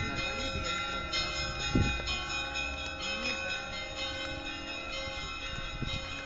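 Russian Orthodox church bells ringing, many overlapping tones sounding on steadily together. A low thump comes just before two seconds in.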